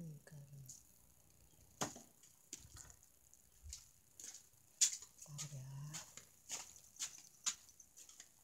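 Scattered light clicks and knocks of kitchen utensils and a stone mortar and pestle being handled, the sharpest about five seconds in.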